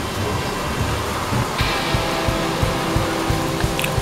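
Background music with a steady low beat. A brighter hiss joins it about one and a half seconds in.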